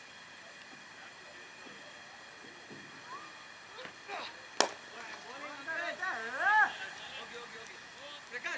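A cricket bat strikes the ball with one sharp crack about halfway through. Players' voices are raised in shouts right after it.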